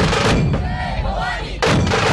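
A massed group of dhol drums from a dhol-tasha troupe beaten hard together in heavy, loud strokes. The drumming breaks off for about a second just after the start, then crashes back in.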